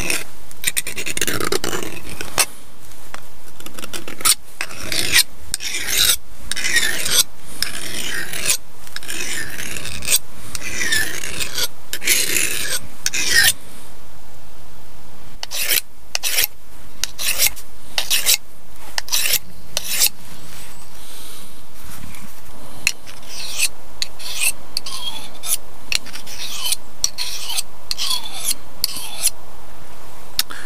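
A hand-forged steel hook knife being sharpened by hand with a file and hone: short rasping strokes along the blade about once a second, with a pause of a second or two around the middle and lighter strokes near the end.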